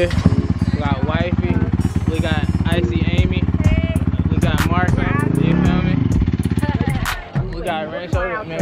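Dirt bike engine running close by with a fast, even pulse, rising in pitch and falling back once about five and a half seconds in, then cutting off suddenly about seven seconds in.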